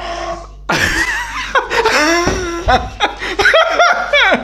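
People laughing loudly, in bursts. The laughter breaks out suddenly just under a second in.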